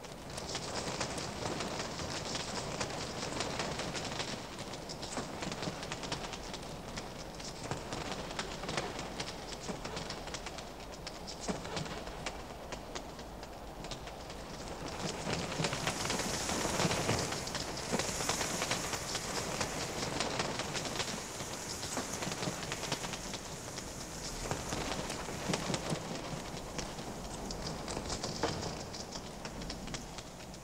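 Wings of a large flock of birds flapping as they fly, a dense fluttering that swells about halfway through and eases near the end.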